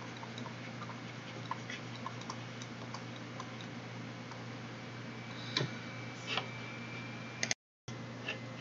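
Stylus tapping and sliding on a tablet screen while writing and drawing: faint scattered ticks about twice a second, with two louder clicks past the middle, over a low steady hum. A brief total dropout comes just before the end.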